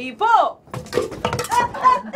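A red plastic toy hammer strikes a pot held up over the head as a shield, making a few sharp knocks among shrieks and shouting.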